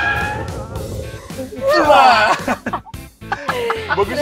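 Several people laughing and shrieking inside a car just after a hard emergency stop, loudest about two seconds in, over background music.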